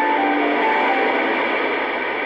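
Shortwave AM reception of a Voice of America broadcast on an Icom IC-R8500 receiver: a guitar music bridge between narrated passages, its held notes dying away about halfway through and leaving the noise of the radio signal.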